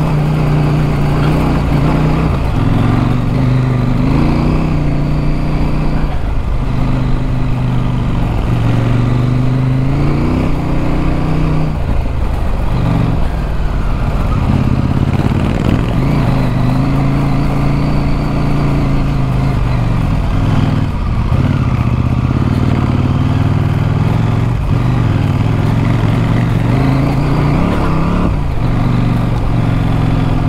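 Adventure motorcycle engine running under way on a gravel track, heard from the bike itself. Its note rises and falls with throttle and gear changes over a steady rush of wind and road noise.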